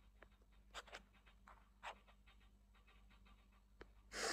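Near silence: room tone with a low hum and a few faint, short clicks.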